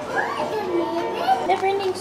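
A child's high voice talking or exclaiming, its pitch swooping up and down.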